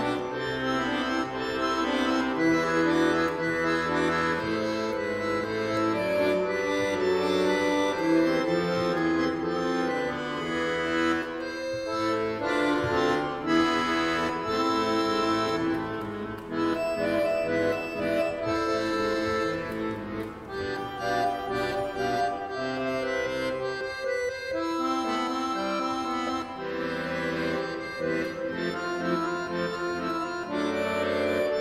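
Accordion music: held chords under a moving melody, played without a break.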